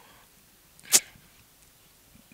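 A single brief, sharp mouth noise close to a handheld microphone about a second in, a quick hissy puff or click rather than a word.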